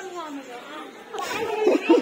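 People's voices talking over one another, faint at first and growing louder in the second half.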